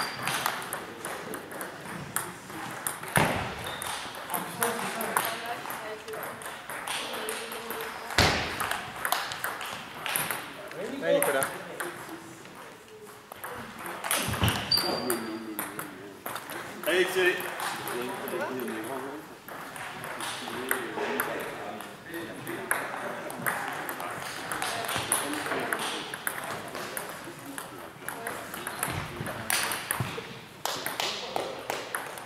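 Table tennis ball clicking rapidly back and forth off the rackets and the table during rallies, with pauses between points. Background chatter of voices carries on underneath.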